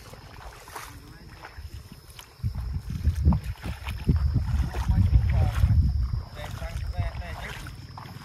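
Wind buffeting the microphone in open country. It makes a heavy low rumble that swells about two and a half seconds in and eases off again about six seconds in.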